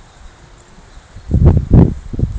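A quick run of heavy, dull thuds starting just over a second in, the loudest near the end.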